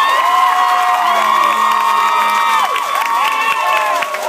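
A crowd cheering and screaming, with many high voices held and gliding over one another without letting up.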